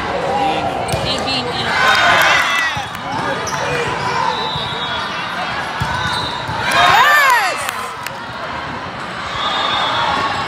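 Indoor volleyball rally: the ball is struck and hits the court, with players and spectators calling out in a large, echoing hall. The sound is loudest about two seconds in and again about seven seconds in.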